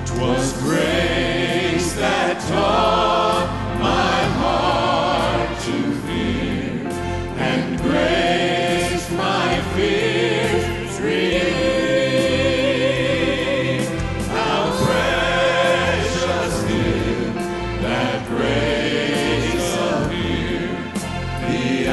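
A mixed vocal group of men and women singing a gospel song in harmony into microphones, over instrumental accompaniment with a pulsing bass.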